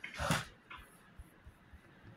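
A short breathy exhale, then a few faint taps of laptop keys being typed.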